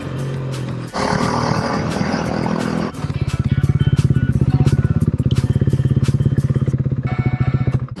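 A motorcycle slowing to a stop, then its engine idling with a fast, even pulse from about three seconds in.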